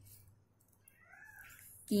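Faint, wavering pitched calls in the background, then a woman's voice starts speaking just before the end.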